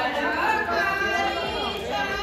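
Indistinct chatter of many people talking over one another.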